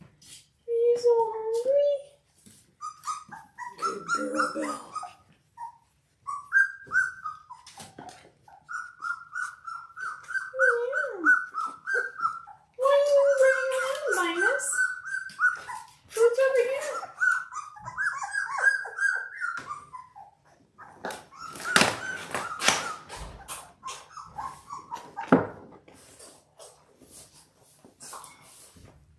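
Two-and-a-half-week-old Labrador retriever puppies whining and squealing in high, wavering cries, one after another, as they crawl in to nurse. Scuffling noises follow near the end.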